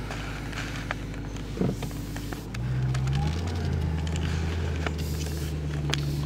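BMW M3's V8 engine running at idle, heard inside the cabin. About two and a half seconds in, the engine note steps up louder and a little higher, then holds steady.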